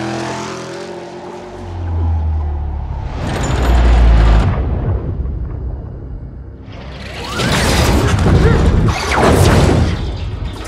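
Action-film sound mix of a music score with deep booms. A heavy low boom swells about two seconds in, the sound eases off mid-way, then surges loud and full again for the last three seconds.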